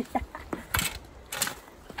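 Metal ironing board's folding legs being lowered to a new height: a series of clicks and clanks from the height-adjusting mechanism, with two louder ones near the middle.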